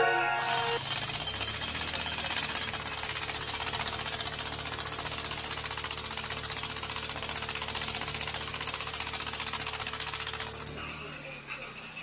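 Jackhammer breaking up concrete: rapid, steady hammering that starts about a second in and stops near the end.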